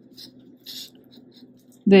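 Fingertips scratching and rustling faintly in coarse potting mix at the base of a pitcher plant, a few short soft scratches.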